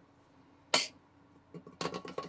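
The plastic spinning top of a 1956 Schaper Put and Take game winding down and toppling, clicking and tapping against the table in a quick run of small knocks from about a second and a half in as it wobbles onto its side. There is one short sharp sound near the middle, before the clicks.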